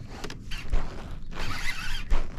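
Baitcasting reel being cranked, a rough mechanical whir in two short spells.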